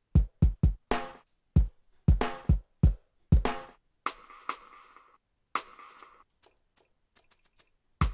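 Electronic drum and effect samples from BandLab's Digital Dub Creator Kit, triggered one at a time from MIDI pads in an uneven, improvised pattern. Deep low hits come first, then noisier hits from about halfway, and a quick run of short high ticks near the end.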